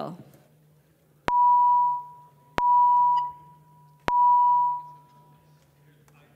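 Three electronic beeps, each a single steady mid-pitched tone starting with a click and lasting under a second, spaced about a second and a half apart: the legislative chamber's voting-system signal as a roll-call vote opens.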